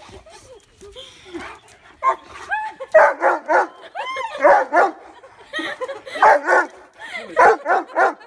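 A dog yelling at its owner in a run of short whining yelps that arch up and down in pitch, starting about two seconds in and getting louder from three seconds: excited greeting vocalizing after a long separation.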